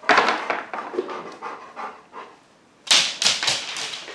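A dog panting fast, about four or five breaths a second, pausing a little past the middle, then panting again more loudly near the end.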